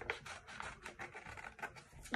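Small scissors snipping through folded paper, a run of short, quiet cuts.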